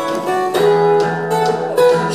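Steel-string acoustic guitar played solo, several picked notes ringing in over a sustained low bass note.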